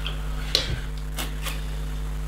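Small plastic Lego pieces clicking a few times as hands handle and fit them, over a steady low hum.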